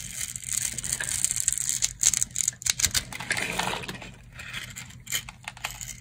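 A blade cutting through a scored bar of dry soap, the small pre-cut cubes crunching and snapping off in a quick run of crisp cracks. The crackling is densest in the first few seconds and thins out after about four seconds.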